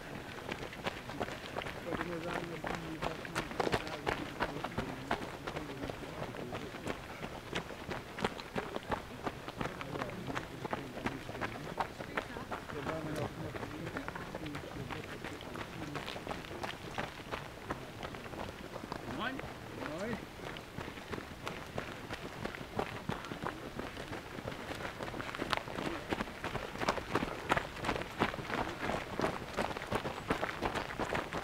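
Footsteps of many runners on a gravel path, a dense run of quick steps that gets louder near the end as runners come close, with indistinct voices in the background.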